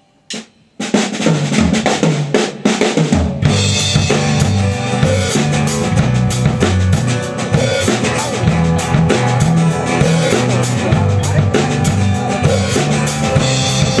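A live rock band comes in with drum kit, electric bass and acoustic guitar about a second in, after a last count-in click. The band then plays steadily, with a stepping bass line under a regular drum beat.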